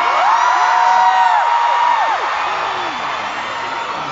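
Arena crowd of fans screaming and cheering, many high voices held and overlapping, loudest in the first two seconds and then settling into general crowd noise.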